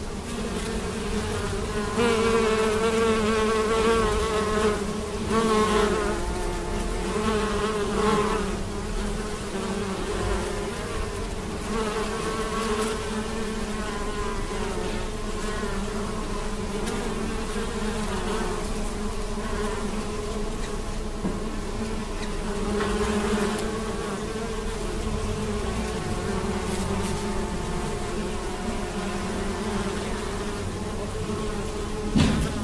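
Many bees buzzing as they forage on maize tassels: a steady hum of overlapping wingbeats. Louder, wavering buzzes from bees passing close come between about two and eight seconds in.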